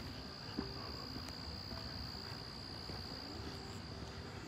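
Crickets trilling: a steady, continuous high-pitched chorus, faint but unbroken.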